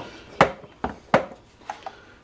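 Sharp clicks and taps of the chainsaw's carburetor parts being worked by hand, as the grommet is pressed home and the throttle cable pulled through the linkage: three strong clicks in the first second or so, then two fainter ones near the end.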